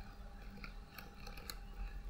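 Faint, irregular clicks of computer keyboard keys being typed, over a low steady background hum.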